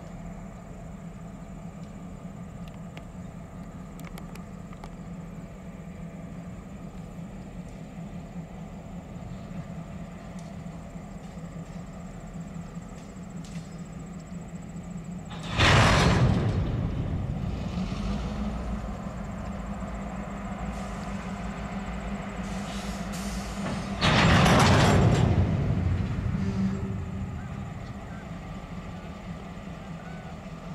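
Diesel freight locomotives idling steadily, with two loud blasts of hissing air from the train's air brake system, one about halfway through and another some eight seconds later, each tapering off over a few seconds.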